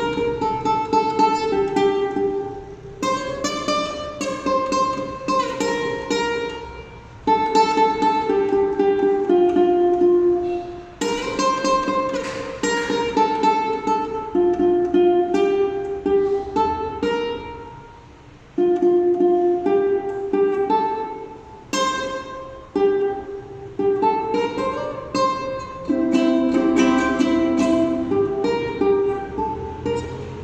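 Ukulele playing an instrumental piece, with melody notes picked over chords. It goes in phrases separated by several brief pauses.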